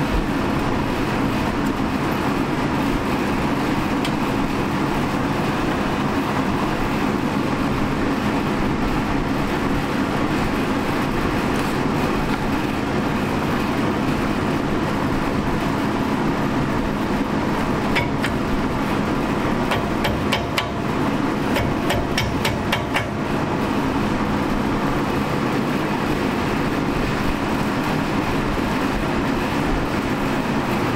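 Large drum shop fan running steadily. From about eighteen seconds in, a quick run of light metallic clicks lasts several seconds as brake pads and their retaining pins are handled in a four-piston Brembo caliper.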